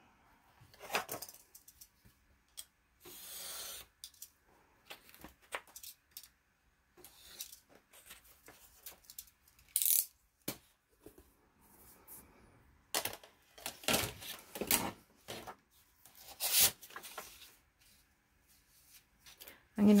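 Paper and a clear plastic quilting ruler being handled on a cutting mat: intermittent rustles, taps and clicks, with a brief scraping rustle about three seconds in.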